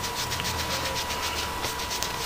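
Short scratchy rubbing and rustling strokes, several a second, from hands handling things out of view, over a steady faint high hum.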